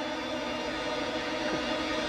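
Background drama score: steady sustained chords holding under a pause in the dialogue, with no beat.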